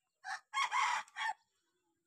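A rooster crowing once: a harsh call about a second long, broken into a short note, a long middle note and a short final note.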